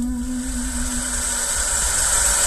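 Vinyl LP playing on a turntable as the song ends: the last held note fades away about a second and a half in. Then only the record's steady surface hiss and low rumble go on.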